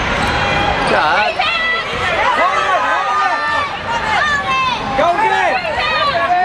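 Sounds of a junior basketball game on a hardwood court in a large hall: the ball bouncing and many short, high sneaker squeaks as players cut and stop, over spectators' voices.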